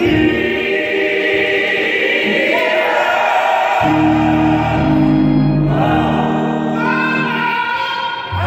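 Small gospel choir of men and women singing, accompanied by a church organ. A held organ chord comes in about halfway through and stops just before the end.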